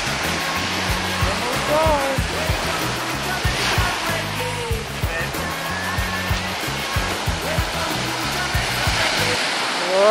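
Small ocean waves breaking and washing up on a sandy shore: a steady rush of surf with an uneven low rumble underneath.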